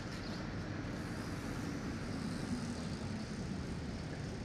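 Steady low rumble of city traffic, with a vehicle engine's low hum swelling and fading in the middle.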